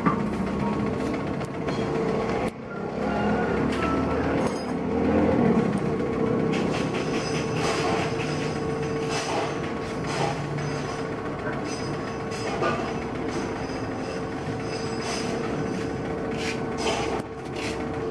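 Steady workshop machinery noise with a constant mid-pitched hum, broken by scattered short knocks.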